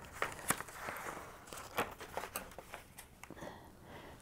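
Paper rustling, with scattered light clicks and taps, as a page of a book is turned and handled.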